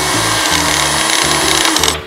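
Electric blender running with a steady whir, cutting off just before the end, over background music with a bouncy bass line.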